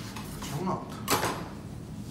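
A metal bench scraper scraping a dough ball up off a stainless-steel counter: one short, sharp metal-on-metal scrape about a second in.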